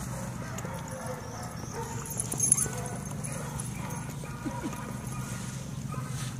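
Dogs playing rough together: scuffling paws and body contact over a steady low hum, with one short sharp high sound about two and a half seconds in.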